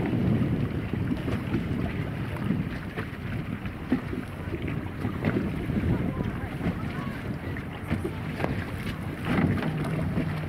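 Wind buffeting the microphone out on open water: a steady, rumbling noise with the sea beneath it.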